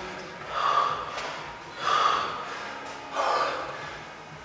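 A man breathing hard while recovering from heavy exertion in a workout: three loud, heavy breaths, a little over a second apart.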